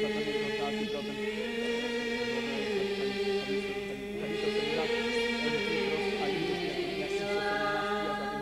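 Byzantine liturgical chant sung by men's voices, in long held notes: a steady low note sounds beneath a slowly moving melody line.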